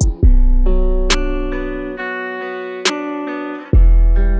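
UK rap instrumental beat: sustained melodic chords over long, decaying deep bass notes, one starting right at the outset and another near the end. There are two sharp drum hits, about a second in and near three seconds.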